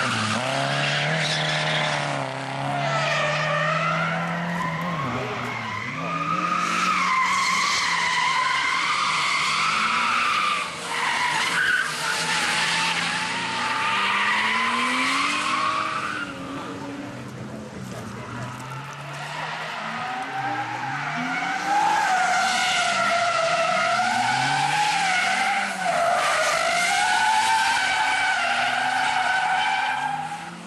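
Cars drifting through a corner on a race track: tyres squealing in long, wavering screeches while the engines rev up and down. Several cars slide past, with a quieter stretch about halfway through.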